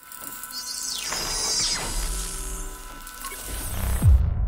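Synthetic logo-sting sound effect: a swelling electronic whoosh with falling glides and a few held tones, building up to a deep boom right at the end.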